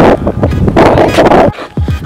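Wind buffeting the microphone in loud, uneven gusts that drop away about one and a half seconds in, followed by a short laugh.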